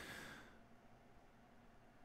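A man's brief sigh: a breathy exhale into the microphone that fades within about half a second. Then near silence, room tone.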